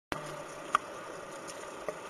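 Steady low background hiss with a sharp click about three quarters of a second in and a few softer clicks.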